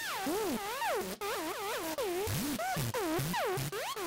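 ZynAddSubFX software synthesizer patch played monophonically in legato mode from a MIDI keyboard. An LFO on the pitch makes each note swoop up and down about twice a second over a hiss, as a synthesized imitation of a vinyl record scratch.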